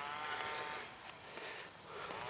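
A distant cow mooing: one long, faint, drawn-out call that rises and falls in pitch and dies away within the first second.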